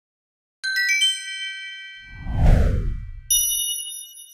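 Channel logo sting: a quick cascade of bright chime notes rings out, then a deep whoosh sweeps downward, and a final bright ding chord rings and fades.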